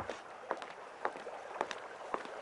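Footsteps on stone paving, an even rhythm of about two steps a second, over a faint steady outdoor hiss.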